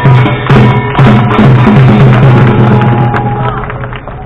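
Live Korean traditional music accompanying a jultagi tightrope act: drum strokes under held melody notes, fading down toward the end.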